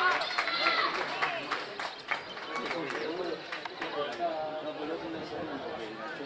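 Several voices shouting and cheering over a goal, loud at first and dying down into scattered chatter.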